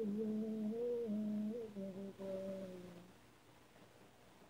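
Isolated female lead vocal with no instruments, singing a held melodic line that steps up and down in pitch and fades out about three seconds in, leaving faint hiss.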